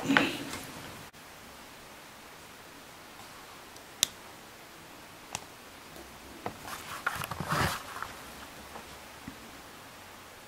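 Small handling noises from a plastic wireless headset: a sharp click about four seconds in and a lighter one a little later, then a second or so of rustling and light knocks.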